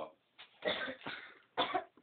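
A person's short, breathy vocal bursts, three of them over about a second and a half, the middle one the longest.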